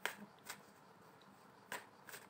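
A deck of tarot cards being shuffled overhand from hand to hand, giving three quiet, sharp clicks of card against card: one at the start, one about half a second in, and one near the end.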